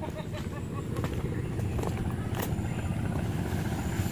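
An engine running steadily in the background, a low rough hum, with a few light knocks.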